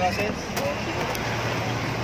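A bus engine idling with a steady low hum amid street traffic noise, with a few brief fragments of voice near the start.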